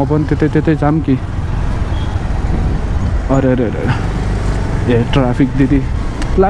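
Steady low rumble of a motorbike ride, engine and wind noise on the microphone, running under the whole stretch.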